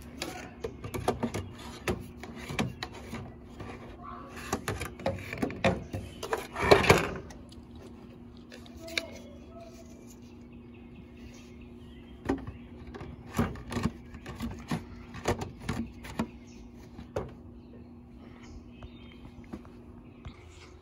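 Hard plastic knocks and clicks from handling a Milwaukee M18 FUEL blower body and its blower tube while fitting the tube on, with one louder burst of handling noise about seven seconds in. A faint steady hum runs under the second half.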